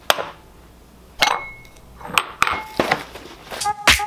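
A clear glass bowl and a cereal box being set down and handled on a granite countertop: a handful of sharp clinks and knocks, a couple with a short rustle after them. A music track with a beat comes in near the end.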